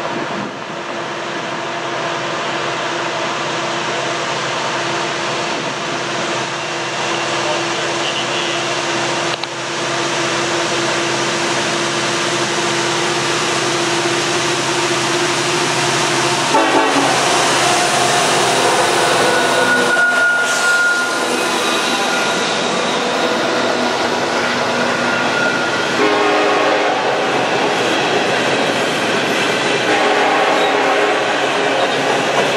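Norfolk Southern diesel-electric locomotives working hard as they haul an empty coal train up a grade. The sound grows louder as they approach and pass about halfway through, followed by empty coal hopper cars rolling by.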